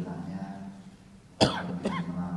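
A man coughs twice close to a microphone: a sharp, loud cough about one and a half seconds in, then a second, weaker one half a second later.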